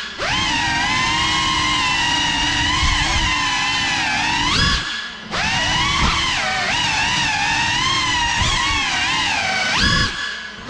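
Motors and propellers of an iFlight Cinelog 35 cinewhoop FPV drone whining, the pitch swinging up and down with the throttle. The throttle is cut briefly about five seconds in and again at the end: the whine drops and fades for a moment, then climbs back.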